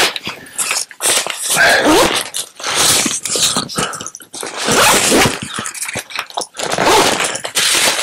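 Nylon backpack fabric rustling and scraping under hands fumbling over the pack's top lid in search of a zipper: an irregular string of loud brushing swishes with short breaks and a few brief squeaks.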